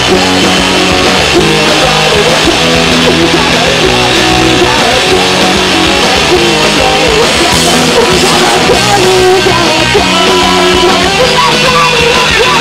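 Live punk rock band playing loud and without a break: electric guitars, bass guitar and drum kit.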